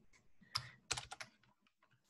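A handful of faint computer keyboard keystrokes: a single click about half a second in, then a quick run of clicks around one second in, as code is typed.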